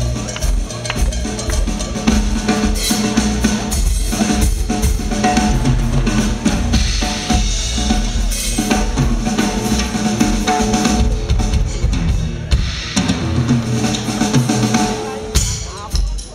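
Drum kit solo played live, a fast, dense, unbroken run of strokes across the drums with a strong bass drum underneath.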